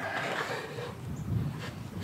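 Soft, steady scraping and rustling of a wooden hive shield being slid and pressed into place against the wooden beehive body.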